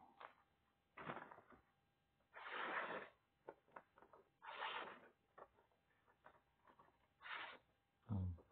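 Freshly sharpened knife blade slicing through a sheet of paper: four short, quiet rustling cuts with small ticks of paper handling between. The edge goes through the paper smoothly after ten strokes on the sharpener.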